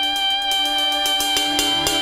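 Live wedding band music: a held chord with quick strummed strokes on top.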